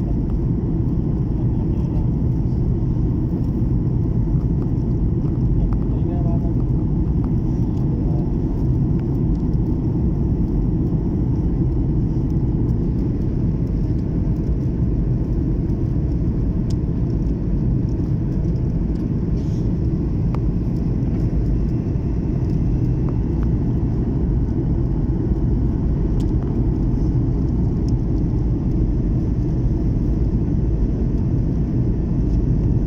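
Steady jet airliner cabin noise heard from a window seat beside the wing of a flydubai Boeing 737 in flight: an even, low rumble of the engines and rushing air that holds the same level throughout.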